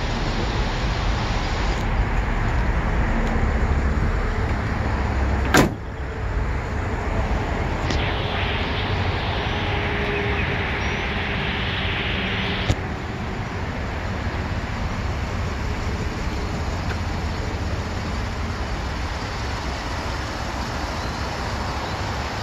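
A 2017 Ford F-150 pickup tailgate is shut with one sharp, loud bang about five and a half seconds in. A fainter click follows near thirteen seconds. A steady low rumble runs underneath.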